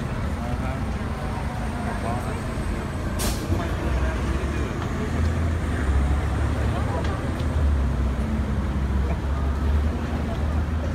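Steady low engine rumble of street traffic with a crowd chattering over it, and a short hiss about three seconds in.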